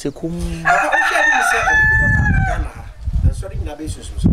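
A rooster crowing once, a long call of about two seconds that holds one pitch and drops at the end. A man's voice is heard briefly just before it.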